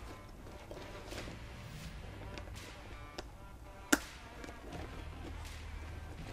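Quiet handling of a holster mounting plate and its screw hardware against a fabric pack, with one sharp click about four seconds in, as a screw post goes onto the plate.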